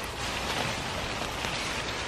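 Hands digging through loose compost, a steady crumbling rustle of soil being pushed aside to uncover new potatoes.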